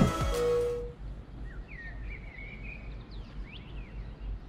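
Background music ends with a held note in the first second. Then comes outdoor ambience: a steady low background hiss and a small bird chirping in quick up-and-down calls.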